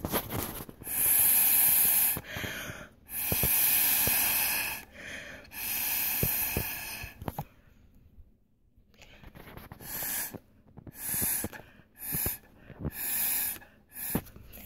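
Puffs of breath blown through a drinking straw to push and fan out wet alcohol ink on glass, thinning dense patches: three long blows of about a second and a half, then, after a short pause, four shorter puffs.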